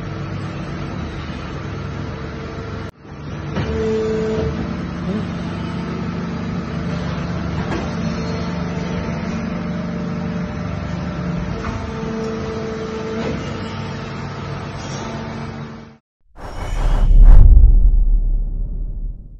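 Krauss Maffei KM 650-1900/520 CZ Multinject injection moulding machine running in its cell: a steady industrial hum with several held tones, briefly breaking off about three seconds in. Near the end the hum stops, and a short logo sting follows, a whoosh with a deep boom.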